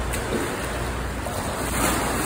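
Steady wash and splashing of water in an indoor swimming pool, with a swimmer splashing at the wall.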